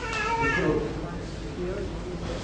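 A brief high-pitched vocal cry or exclamation from someone in the room at the start, followed by faint voices.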